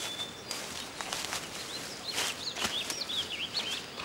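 Small birds chirping: a run of short, quick up-and-down calls in the second half, over a faint outdoor background hiss.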